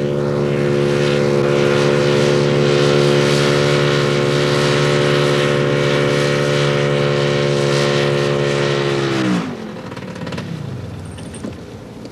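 A small engine on a home-built hovercraft running at a steady speed, then shut off about nine seconds in, its note sliding down as it runs down and leaving a much quieter background.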